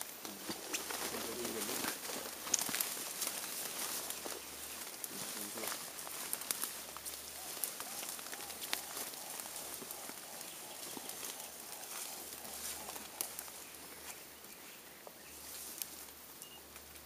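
Crackling rustle and snapping of leafy stems as a silverback Grauer's gorilla feeds in dense undergrowth, with quiet murmured human voices near the start and again about five seconds in.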